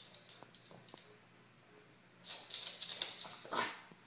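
A Maltipoo's claws clicking and scuffling on a hardwood floor as it scampers about. There are a few light ticks in the first second, then a louder stretch of scuffling from about two seconds in until shortly before the end.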